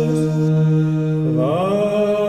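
A single voice chanting long held notes: one low note sustained, then sliding up to a higher note and holding it about one and a half seconds in.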